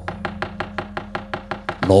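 The dalang's keprak and cempala, metal plates on the puppet chest struck with a wooden knocker, rattled in a fast, even run of about nine sharp knocks a second. A faint steady low tone sounds underneath.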